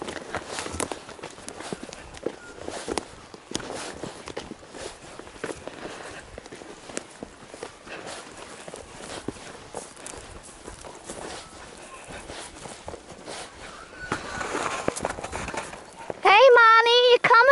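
Horses walking across a grassy paddock: irregular hoof footfalls with rustling close by.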